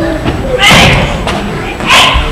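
Two loud bursts of shouting with heavy thuds, about a second and a quarter apart, the first the louder: martial-arts shouts and strikes in a demonstration.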